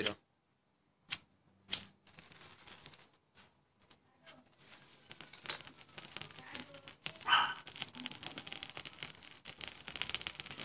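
Ferrocerium fire steel scraped three times in quick succession, sharp scrapes that throw sparks onto a cotton fire starter. Then faint, irregular crackling as the starter catches and burns with a small flame.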